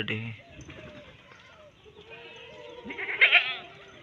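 A farm animal bleats once, loudly, with a wavering pitch, about three seconds in, over faint low background sounds.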